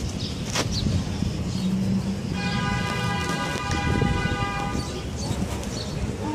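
Steady low background noise outdoors, with a steady high tone held for about three seconds starting a little over two seconds in.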